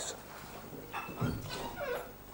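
Faint, high-pitched cries of a small animal, likely a pet. A short tone comes about a second in, and a call falls in pitch near the end.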